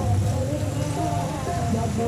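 A naat, an Islamic devotional song, being sung in a held, wavering melody, with a motorcycle engine running low underneath.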